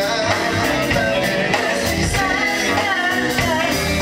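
Live old-school funk band playing at a steady loudness: drums and bass under a wavering lead melody line.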